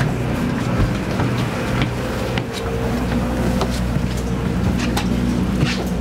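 A steady low machine hum made of several held tones, with a few scattered light knocks of footsteps on the steps up into the trailer's lounge.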